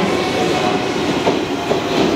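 A JR Central 383 series electric train running along the platform, with a steady rumble of wheels on rails. There are a couple of sharp clicks from the wheels in the second half.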